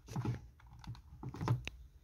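Quiet, irregular clicks and taps of buttons being pressed on a small portable music player, cueing up the backing track.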